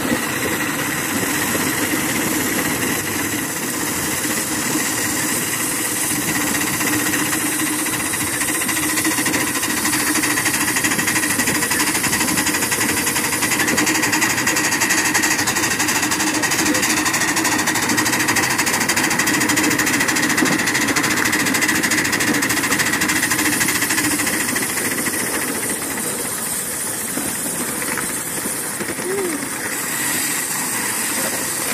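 Ride-on live-steam miniature locomotive running along the track, a steady mix of steam, exhaust and wheels on rail.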